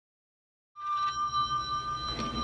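A sustained high electronic tone, several pitches held together over a low rumble, starting suddenly about three-quarters of a second in.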